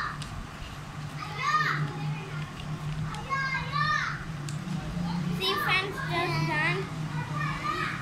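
Young children's voices in three short bouts of high-pitched vocalising, over a steady low hum.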